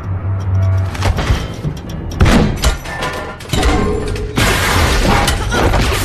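Action-film soundtrack: orchestral score under a run of crashes and shattering impacts, the loudest about two seconds in, with a dense burst of crashing noise from about four and a half seconds on.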